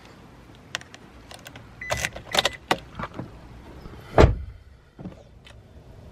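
Car keys jingling and clicking as the key is handled at the ignition of a Toyota bB, then one loud, heavy thud about four seconds in.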